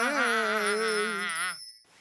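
Cartoon voices making a long, wavering 'mmm' of delight over a twinkling sparkle sound effect, the candy-bliss hum cutting off about a second and a half in.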